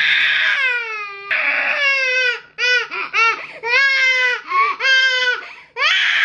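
A baby crying: a series of high wails, the first a long falling one, then shorter rising-and-falling cries about twice a second.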